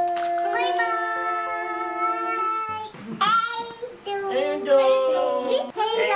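A group of voices, a child's among them, singing long drawn-out notes together: one held phrase for about two and a half seconds, a short break, then a second held phrase.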